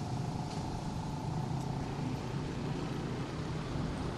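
A steady, even hum like a running motor, with background noise from outdoors.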